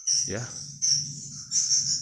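Crickets chirping, a high pulsing trill at about three pulses a second.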